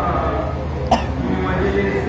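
A single short, sharp cough about a second in, over a steady low electrical hum.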